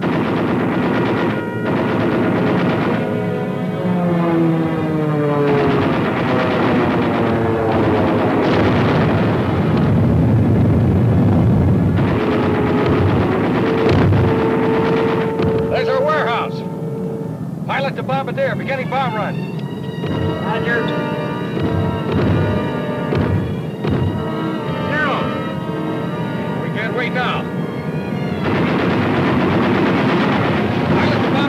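Dramatic orchestral film score with held and gliding notes, joined from about halfway through by rapid machine-gun fire from an aerial battle.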